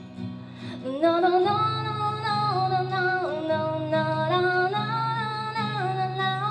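A woman singing live, holding long notes that slide between pitches, over acoustic guitar accompaniment; the voice comes in strongly about a second in.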